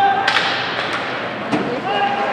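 Ice hockey play: a few sharp cracks of sticks and puck on the ice and boards, over the steady noise of the rink and shouting voices from players and spectators.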